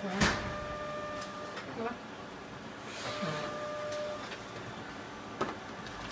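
Kyocera 5551ci copier's automatic document feeder drawing originals through for scanning. There is a rush of paper just after the start, a steady motor whine twice about three seconds apart, and a sharp click near the end.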